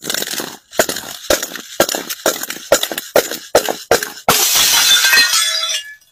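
A large glass bottle full of Lego bricks tumbling down concrete steps: a rapid run of knocks, about three a second, as it strikes step after step. About four seconds in it shatters in a long crash of breaking glass and spilling plastic bricks, which stops abruptly about a second and a half later.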